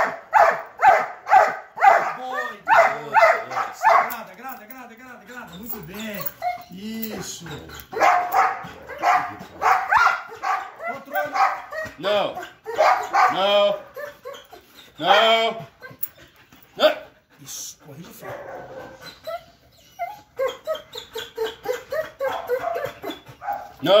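Belgian Malinois barking in runs of quick, sharp barks, about three a second, broken by gliding whines between the runs.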